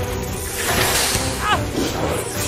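Background score music with a long, loud hiss from a giant fang serpent about half a second in, followed by a short cry that falls in pitch near the end.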